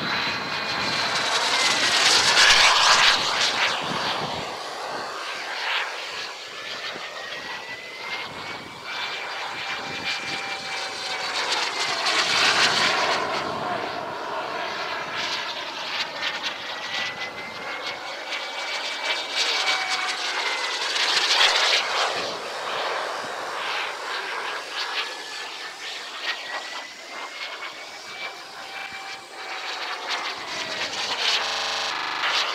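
Radio-controlled model delta-wing jet flying overhead, its engine whine wandering up and down in pitch. It swells loud three times as it passes: near the start, around the middle and about two-thirds of the way through.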